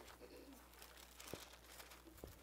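Near silence with the faint rustle of thin Bible pages being leafed through by hand, and one soft tap about one and a half seconds in.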